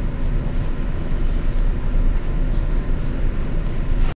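Steady low rumble of room background noise, with a few faint ticks.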